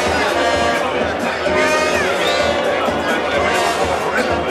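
Brass band music playing over a crowd's voices and shouts.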